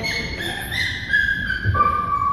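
A child's high-pitched squealing: long held shrill notes that step down in pitch, over the low background hubbub of an indoor play area.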